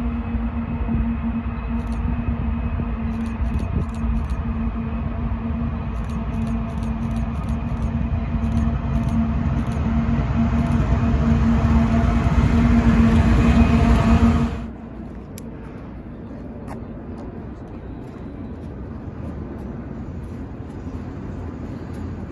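CP ES44AC diesel locomotives, GE's twelve-cylinder engines, leading an intermodal train with a steady engine hum that grows louder as the train approaches. About two-thirds of the way through the sound cuts off suddenly, leaving a quieter low rumble.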